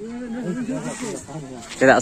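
Only speech: people talking at a lower level, then a louder, closer man's voice near the end.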